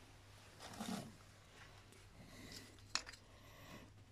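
Faint handling of two metal belt tensioner assemblies in the hands, with one light sharp metallic click just before three seconds in and a few softer ticks.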